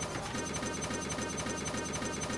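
Glitched, digitally corrupted audio: a dense buzzing texture with a rapid, even stutter, the sound of a databent track.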